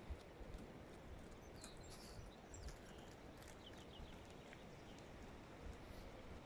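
Near silence: faint outdoor background with soft, irregular low thuds and a few faint high chirps.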